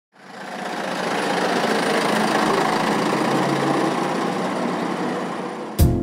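A truck's engine running as it drives past on a wet road, heard as a steady rushing noise of engine and tyres. Music starts right at the end.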